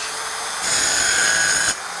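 Rotorazer Platinum Series compact circular saw running at speed and plunge-cutting a sheet of plexiglass. From just under a second in to near the end, the cut turns louder with a high-pitched whine while the blade is in the plastic, then the motor runs on.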